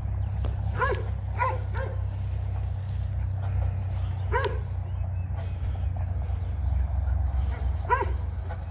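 A dog barking: three quick barks about a second in, one more near the middle and one at the end, over a steady low rumble.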